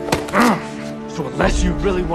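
Film soundtrack: tense music under a sharp hit near the start, followed by a short grunt or cry, then another hit with a low rumble about one and a half seconds in.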